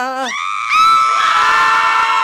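Several cartoon voices screaming together in one long, held scream that starts about half a second in, right after a short cry.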